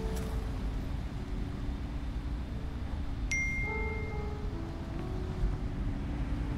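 Steady low rumble inside a car, with a few soft, sparse piano notes. About three seconds in, a single bright phone message notification ding rings for about a second.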